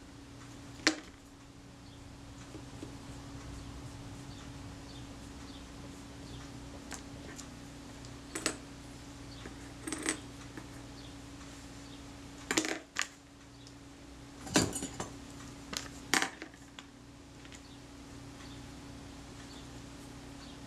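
About eight small, sharp metallic clicks and taps, scattered irregularly and bunched in the second half, as metal tweezers and a knurled metal ring from a Kodak Retina Reflex S lens assembly are handled. A steady low hum runs underneath.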